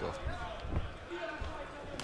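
Boxing-arena crowd murmur with dull low thuds from the ring, most plainly about three-quarters of a second and a second and a half in.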